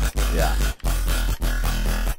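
Riddim dubstep bass patch from the Serum synth, run through short delay, reverb and OTT compression, playing a heavily distorted, metallic-edged growl over a deep sub-bass. It repeats in notes cut by short gaps about every two-thirds of a second.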